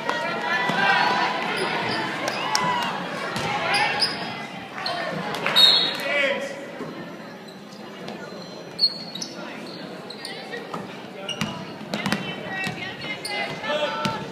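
Basketball game on a hardwood gym floor: a ball dribbled and bouncing in repeated sharp thuds, under players' and spectators' calls, echoing in the hall. Busier and louder in the first half, thinning out in the second.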